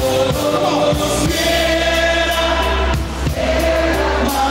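Live band music with several voices singing together in long held notes over a steady bass.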